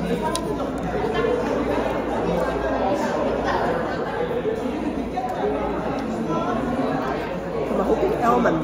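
Steady background chatter of many people talking at once in a busy café, with no single voice standing out.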